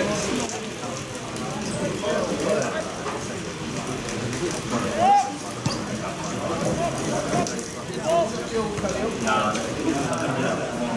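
Voices on a football ground, with players calling out across the pitch and spectators talking nearby, over a steady patter of rain. One loud, rising shout comes about five seconds in.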